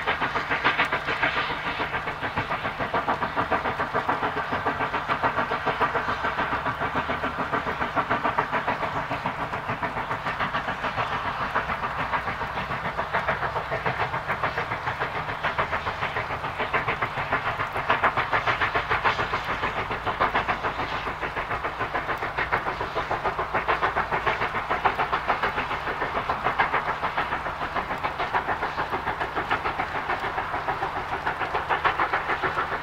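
LMS Stanier Class 5 'Black Five' 4-6-0 steam locomotive 45305 working hard with a passenger train, its two-cylinder exhaust beating in a rapid, steady rhythm.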